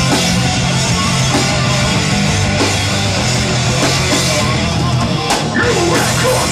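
Rock band playing live: electric guitars, bass guitar and a drum kit at a steady, loud level, with a sharp drum stroke about five and a half seconds in.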